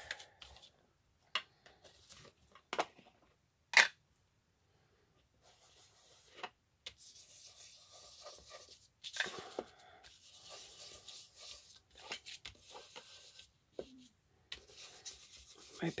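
An ink blending tool rubbed and dabbed across the edges of file-folder card strips: soft scuffing strokes, with a few sharp taps in the first few seconds. Near the end a short low rumble from a growling stomach.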